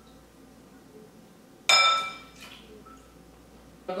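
A glass mixing bowl gives one sharp clink that rings briefly and fades, as carrots are handled in it while being rinsed; a fainter knock follows shortly after.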